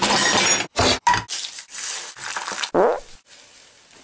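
Frying pan banging and scraping against the metal grates of a gas hob in a series of short, rough bursts, with a quieter stretch near the end.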